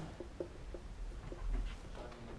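Dry-erase marker squeaking on a whiteboard in a string of short, faint squeaks, one for each stroke as words are written.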